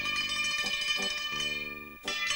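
Concert cimbalom played with hammers: metal strings struck in a run of notes that ring on between strokes.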